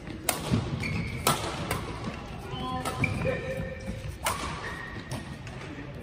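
Badminton rackets striking a shuttlecock in a doubles rally: four sharp cracks, three in the first two seconds and one a little past four seconds. Sneakers squeak briefly on the court floor between the hits.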